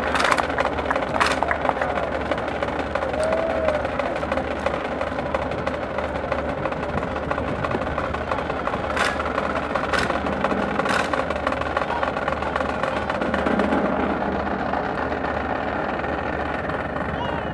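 Sharp single cracks of rifles being slapped, spun and grounded in a silent rifle drill: two strikes about a second apart near the start, then three more about a second apart in the middle, over a steady background din.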